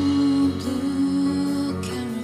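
Live band music in an instrumental passage, with drums and piano; a long held note slides down to a lower pitch near the end.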